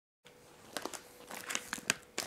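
A cookie package crinkling as it is handled, in a run of short, irregular crackles that start shortly after a moment of silence.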